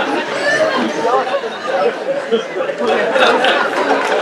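Several voices talking over one another in a lively murmur of chatter, with a laugh near the end.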